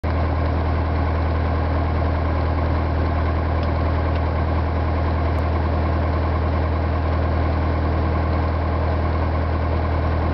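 Piper Warrior's four-cylinder Lycoming engine and propeller running at a steady low taxi power, heard from inside the cabin. The deep hum holds one even pitch throughout.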